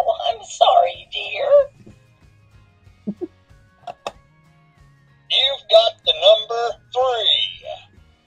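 Electronic talking dice toy sounding through its small speaker: a short synthesized voice-like phrase at the start, a click as its button is pressed about four seconds in, then a longer synthesized phrase from about five seconds in.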